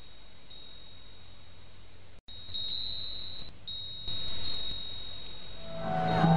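A steady high-pitched whine over a faint hiss, cutting out for an instant about two seconds in. Music begins right at the end.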